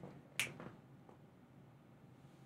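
A single short, sharp click about half a second in, then near silence.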